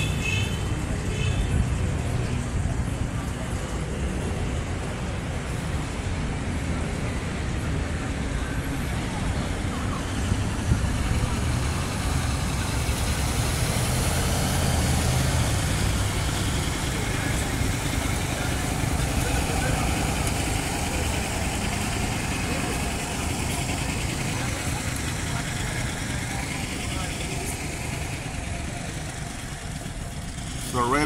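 Street traffic noise: a steady wash of passing cars and engines on a city street, swelling somewhat in the middle and easing off near the end.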